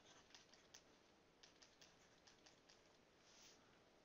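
Faint taps and clicks of a stylus on a drawing tablet while handwriting, about a dozen in two quick clusters, with a short scratchy stroke near the end.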